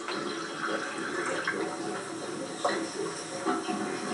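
Water being poured from one paper cup into another.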